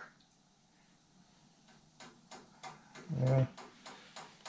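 Quiet shop room tone, then about two seconds in a few light clicks and taps of metal being handled at the truck's front bumper and its mounting bracket.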